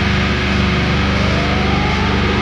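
Heavy metal music: a sustained, low-tuned distorted guitar and bass drone, with a tone gliding upward in the second half.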